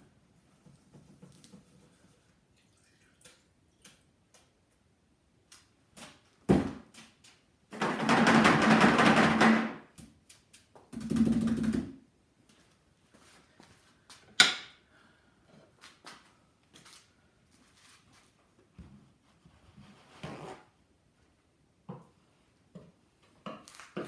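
Off-camera handling noises: a thunk, then a rushing, scrubbing burst of about two seconds and a second, shorter one, followed by a single sharp click, with scattered light knocks between.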